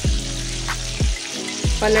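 Cubes of paneer frying in hot oil in an aluminium kadhai, a steady sizzle, over background music with a regular beat.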